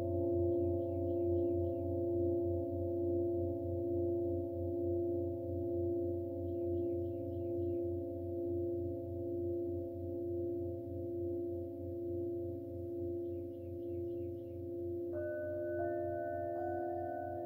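Singing bowls ringing in a long, slowly fading sustain, the low tone wobbling in a slow, steady pulse. About a second before the end a metal singing bowl is struck, adding a new set of higher ringing tones.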